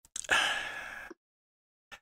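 A man's audible in-breath, a single noisy breath lasting just under a second that fades as it ends, with dead silence either side.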